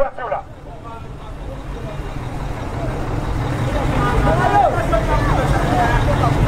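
Low rumble of a vehicle engine running, growing steadily louder, with people's voices in the street from about two-thirds of the way in.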